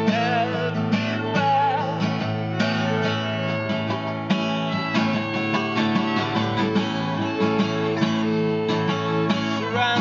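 Acoustic guitar strummed steadily with a violin bowing a wavering melody over it, an instrumental stretch without singing.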